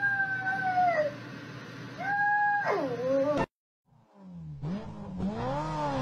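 A small dog howling: two long, steady, high howls, each falling away and wavering at the end. After a brief cut a cat gives a drawn-out yowl that rises and falls in pitch.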